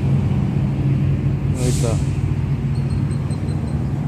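Steady low rumble of a nearby motor vehicle engine running, with a short hiss about halfway through.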